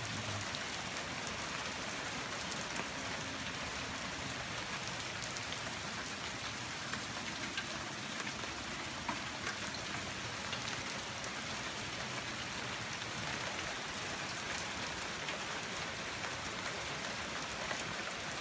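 Heavy rain pouring steadily: an even hiss, with scattered sharp taps of single drops.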